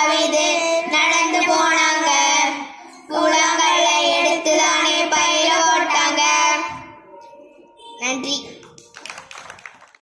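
A group of children singing a song together through a microphone and PA, in two phrases with a short break about three seconds in, the singing ending a little before seven seconds. After that it is quieter, with a brief burst of voice around eight seconds and a few light clicks near the end.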